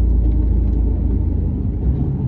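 Diesel lorry engine and road noise heard from inside the cab while driving, a steady low rumble.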